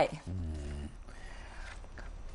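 A person's brief low vocal murmur lasting about half a second, then a quiet pause.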